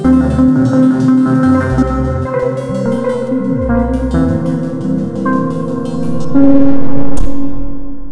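Music: held melodic notes over a bass line, with few sharp beats, building to a louder swell about six seconds in.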